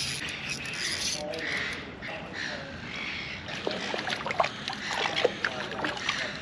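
A spinning reel being wound in while a hooked fish is played beside a kayak, with scattered sharp clicks of reel and rod handling in the second half.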